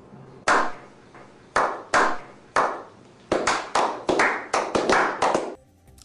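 Hand claps in a slow clap that speeds up. Single claps come about a second apart, then quicken to several a second, each with a ringing tail. The clapping stops just before the end.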